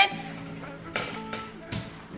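Background music with steady held tones, and a light click about a second in.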